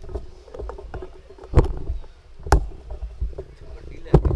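Microphone handling noise: scattered knocks and thumps over a low rumble, with two louder thumps in the middle.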